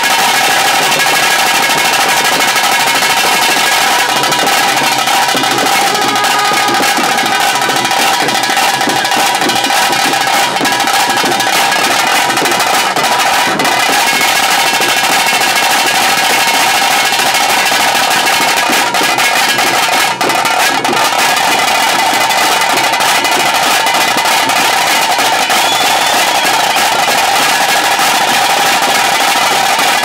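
Fast, continuous drumming of a tiger-dance band's tase drums beaten with sticks, loud and without a break.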